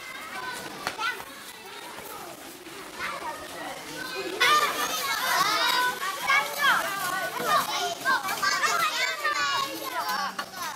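A group of young children shouting and squealing at play, many high voices overlapping. The voices get much louder about halfway through.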